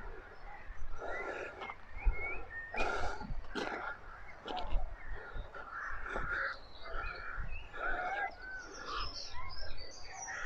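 Birds calling: a scattered series of short calls with no steady rhythm, over a low rumble.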